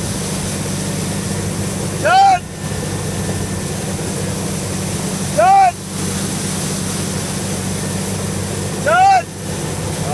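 Steady drone of a tow boat's engine and its rushing wake. Over it, a person's high-pitched voice calls out three times, each a short call rising and falling in pitch, about three seconds apart.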